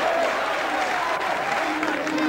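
Church audience applauding and calling out together. Near the end a held organ note comes in under the applause.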